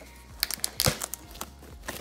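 Corrugated cardboard mailer box being handled and opened, its flaps scraping and cracking, with several sharp knocks in the first second and another near the end.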